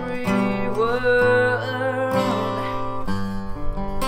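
Ibanez acoustic guitar strummed in slow chords while a man sings a held vocal line over it.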